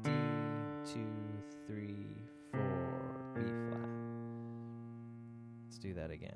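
A piano playing single low bass notes with the left hand in F major, four notes struck over the first three and a half seconds, the last held and slowly fading.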